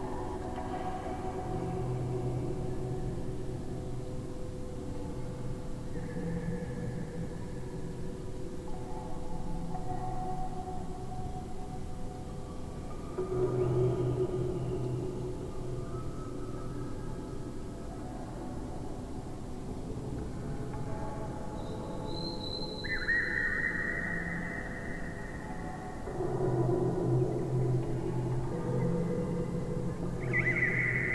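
Electroacoustic music built from much slowed-down, layered recordings of a bamboo wind chime and a metal wind chime: overlapping long, ringing tones at several pitches that drift, swell and fade, with a swell about halfway through and another near the end, and a higher tone coming in during the last third.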